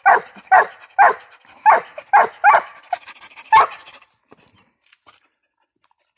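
Young Mountain Cur barking treed, standing against the trunk and barking up at a baby squirrel in the tree: about seven short, sharp barks, roughly two a second, stopping about four seconds in.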